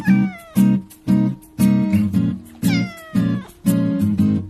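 A cat meowing twice, each call sliding down in pitch, the first at the very start and the second about two and a half seconds in, over strummed guitar music with a steady beat.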